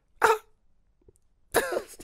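A man coughs once, short and sharp; about a second and a half later a burst of laughter starts.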